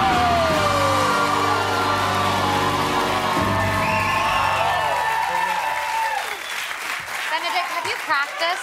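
Studio audience applauding and cheering over music with held notes, dying down about six seconds in to voices and laughter.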